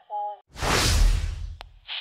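A loud whoosh sound effect with a deep rumble, starting about half a second in and lasting about a second and a half, as part of an animated logo intro. Just before it, a short pitched sound cuts off.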